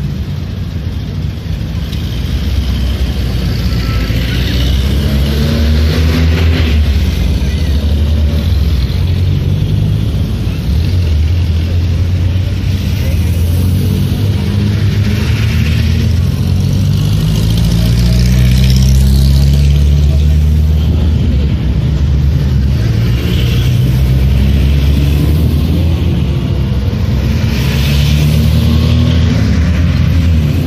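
Vintage Soviet cars and army jeeps driving past one after another, each engine rising in pitch as it pulls away, several times over. A crowd of onlookers chatters alongside.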